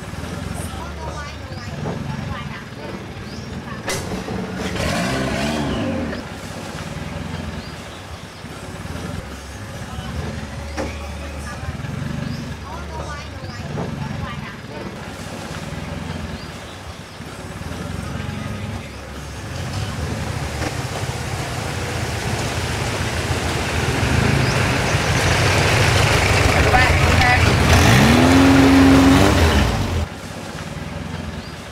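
Boat engine running on the water, with indistinct voices. It grows louder over the last ten seconds and revs up just before the end, where the sound cuts off suddenly.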